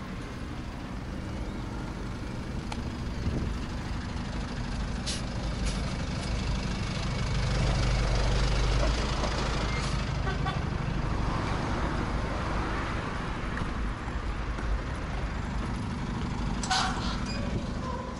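Road traffic going past, one vehicle swelling loudest about eight seconds in, over a low rumble of wind on an action camera microphone with wind noise reduction switched off. A sharp click about five seconds in and another near the end.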